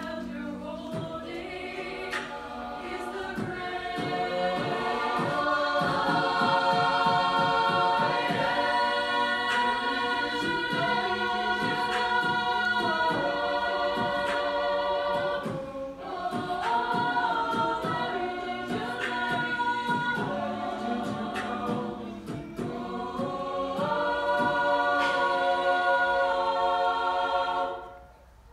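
High school chamber choir singing sustained chords in several parts. It swells louder a few seconds in, breaks off briefly about halfway, then cuts off sharply near the end as the chord is released.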